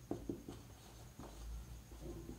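Marker pen writing on a whiteboard: a series of short, faint strokes as words are written out.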